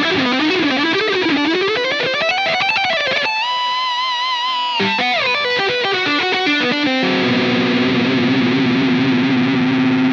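Distorted electric guitar playing a fast lick in B Phrygian. Rapid single-note runs climb and fall, a high note is held with vibrato, there is another quick flurry, and a low note rings out with vibrato for the last three seconds.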